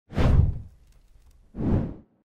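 Two whoosh sound effects for an animated logo intro, about a second and a half apart, each a swell of rushing noise with a deep low end.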